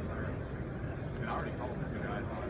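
Indistinct voices of other people talking nearby over a steady low background rumble, with a single sharp click about one and a half seconds in.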